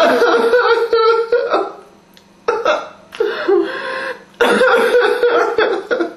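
A man crying aloud, sobbing and wailing in three long bouts with short breaks between.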